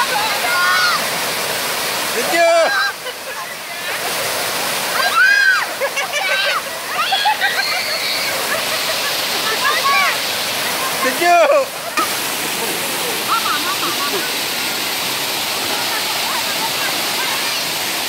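Waterfall pouring steadily into a rock pool, with people in the water shrieking and giggling at the cold in several short, high-pitched outbursts over the rush of water.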